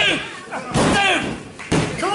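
Referee's hand slapping the wrestling ring canvas for a pinfall count, three slaps about a second apart, with a crowd shouting between them.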